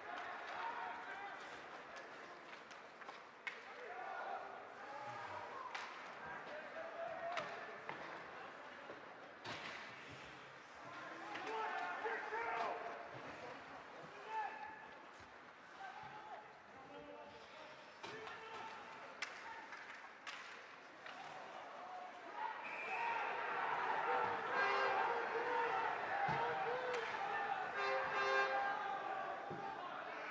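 Ice hockey game sounds in a rink: sharp clacks of sticks, puck and boards over a steady murmur of spectators and players' voices. About 23 seconds in, the voices swell into louder crowd shouting as play piles up at the net.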